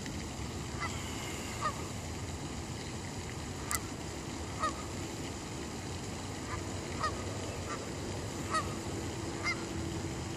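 Geese honking, single short calls repeating every second or so over a steady background hiss.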